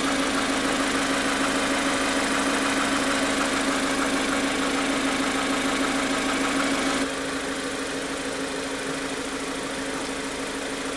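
A 2015 Mazda2's 1.5-litre Skyactiv-G four-cylinder petrol engine idling steadily, heard from beneath the car. The drone drops a little in level about seven seconds in.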